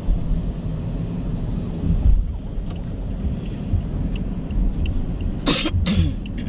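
Steady low road and engine rumble inside a moving Toyota car's cabin, with a brief cough-like burst near the end.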